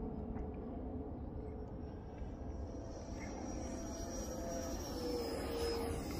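Faint, distant whine of the E-flite F-15 Eagle's electric ducted fan as the small RC jet flies high overhead: a thin high tone that climbs in pitch partway through and sags slightly near the end, over a low steady rumble.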